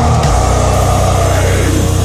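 Heavy metal music: low, heavily distorted guitars held over fast, even drumming in the bass.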